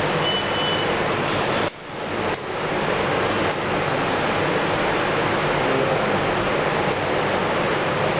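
Steady hiss with a low hum underneath. It drops out suddenly about one and a half seconds in and builds back within a second.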